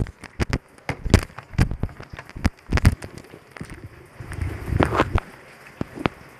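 Handling noise from over-ear headphones held close against the microphone: a string of irregular clicks and knocks, with a stretch of low rubbing about four seconds in.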